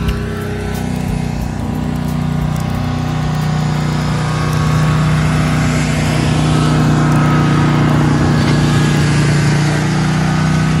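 Engine of paving equipment running steadily, getting a little louder about halfway through.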